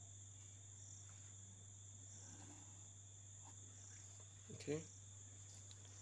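Near silence: room tone with a steady low hum and a faint steady high-pitched whine.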